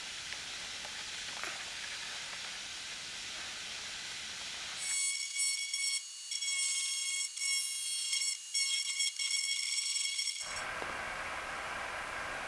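Die grinder with a tapered burr grinding at a broken plastic headlight tab, a high whine that starts about five seconds in, cuts out briefly several times, and stops about ten seconds in. A faint steady hiss comes before it.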